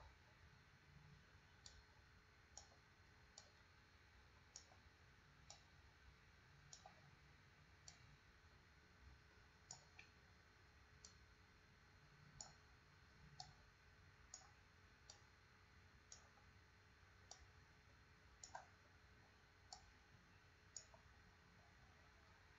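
Faint computer mouse clicks, about twenty in all at an uneven pace of roughly one a second, as anchor points on a plot are clicked and moved. Behind them is a low, steady background hum.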